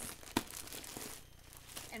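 Clear plastic packaging crinkling as it is pulled open, with a sharp click about a third of a second in; the crinkling thins out after about a second.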